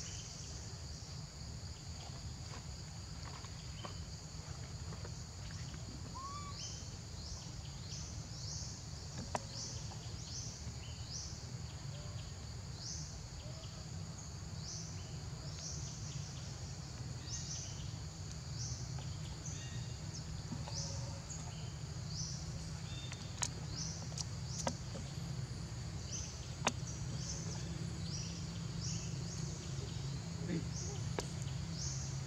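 Steady high-pitched insect chorus, with short rising chirps about once a second through the middle, over a low background rumble. A few sharp clicks sound in the second half.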